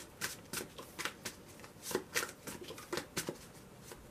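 A deck of tarot cards being shuffled by hand, one packet fed onto the other in a run of short card slaps and riffles, about three a second and unevenly spaced.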